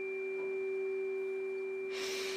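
Tuning fork ringing: one steady pitch holding level, with fainter tones above and below it.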